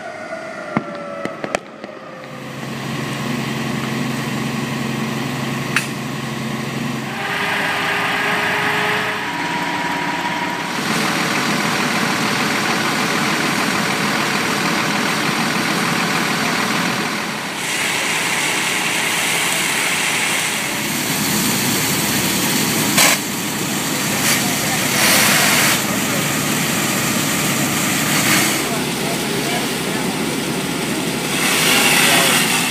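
A few sharp firework pops near the start, then the steady hum of an idling fire engine and the mixed noise of a working structure fire, with voices in it.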